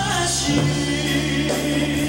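Live band music with singing: long held sung notes over sustained chords.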